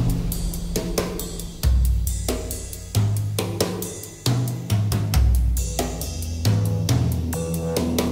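Instrumental passage of a progressive rock song: a drum kit playing snare, bass drum and cymbal hits over held low bass notes that change pitch every second or so, with heavier accents every second or so.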